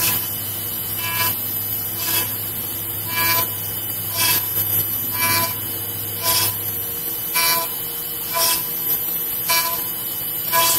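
Five-axis CNC router's spindle running with a steady whine while its bit cuts wood in regular passes, each pass a short buzzing tone about once a second. A low hum under it stops about seven seconds in.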